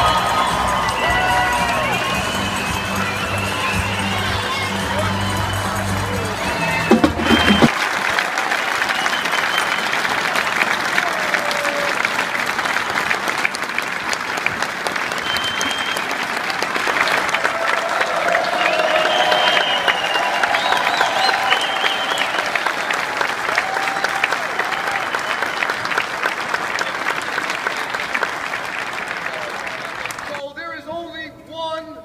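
Pep band brass and drums playing under a cheering crowd. About seven seconds in the music stops and a long round of applause follows, with whoops and shouts from the crowd.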